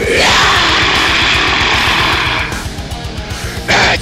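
Heavy metal song with a long held harsh scream over driving guitars and a rapid kick-drum pulse; the scream breaks off about two and a half seconds in. Shouted vocals start again near the end.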